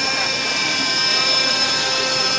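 Steady high-pitched whine of a radio-controlled model aircraft's electric motor, holding several tones at once without change, with crowd chatter behind it.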